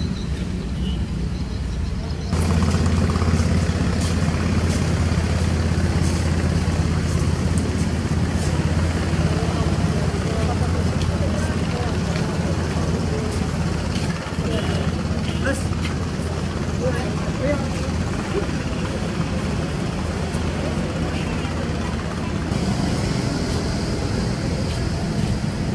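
Outdoor street ambience: a steady low hum of traffic and engines with indistinct voices of passersby. The sound changes abruptly about two seconds in and again near the end.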